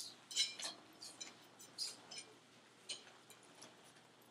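Faint, irregular clicks and ticks, a few each second, from a Quickie GPV manual wheelchair being turned in circles on its rear wheels while held in a wheelie.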